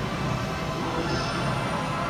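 Steady background din of a busy railway station, with no single sound standing out.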